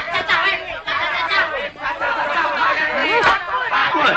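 Several men's voices talking over one another in a busy babble of chatter.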